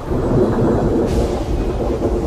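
Loud thunder: a sudden clap that rolls on as a long, deep rumble.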